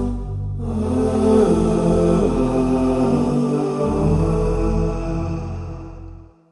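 Closing theme music with chant-like vocals on long held notes, fading out at the very end.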